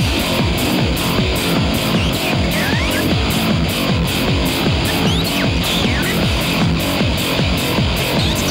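Live band playing loud electronic-tinged rock with a fast, steady beat and a few short sliding electronic tones over it.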